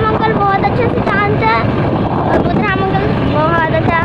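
Steady wind rush and road noise on a microphone riding on a moving two-wheeler. Over it runs a singing voice, its pitch bending up and down.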